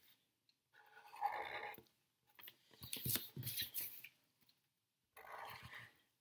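Black marker drawing on paper: scratchy strokes of the tip across the sheet in three short stretches, about a second in, around three seconds in, and near the end.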